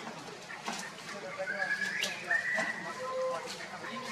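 A monkey's high-pitched drawn-out call, rising then holding steady, about a second and a half in, followed by a few shorter, lower calls; scattered light clicks throughout.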